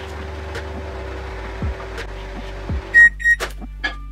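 LG microwave oven running with a steady hum while heating a mug. The hum cuts off about three seconds in, followed by two short high beeps and a few clicks as the door opens. Soft background music with a low beat plays throughout.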